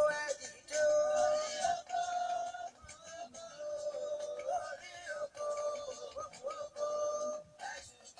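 Singing: a voice holds long notes that bend and slide between pitches in a slow melody, broken by a few short pauses.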